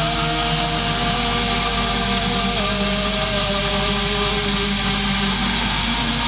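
Rock band playing live: a loud, dense instrumental passage of distorted guitars with long held notes. One note slides down in pitch about two and a half seconds in.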